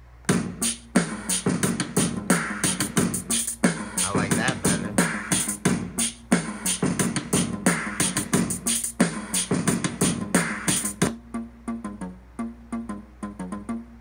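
Akai MPC Live drum machine playing back a sequenced beat of stock drum-kit and instrument sounds. It starts suddenly just after the beginning, runs with dense, evenly paced drum hits for about eleven seconds, then thins out to lighter hits.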